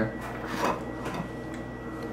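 Faint small sounds of a young child's mouth and teeth working at a plum, not yet biting through its tough skin, over a steady low hum.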